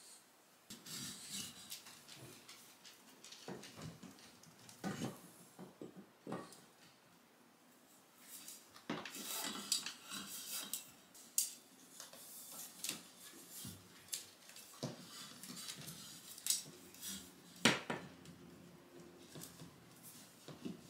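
Linen curtain fabric rustling and a curtain rod clinking as the curtains are threaded onto it and pushed along, with scattered sharp clicks; the loudest comes near the end.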